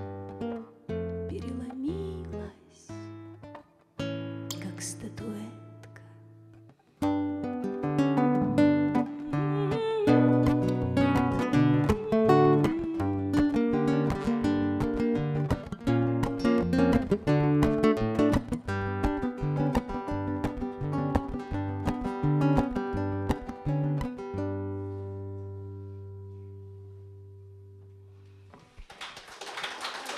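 Two nylon-string classical guitars playing the instrumental ending of a song. Sparse notes come first, then a busy passage of picked notes from about seven seconds in, closing on a chord that rings and slowly fades. Applause breaks out just before the end.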